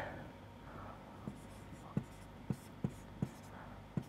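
Marker pen writing on a whiteboard: faint scratching, with about five light, sharp taps of the tip on the board from about a second in.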